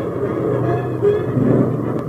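Piston engines of a twin-engine propeller warplane droning steadily as it flies past, with orchestral film music underneath.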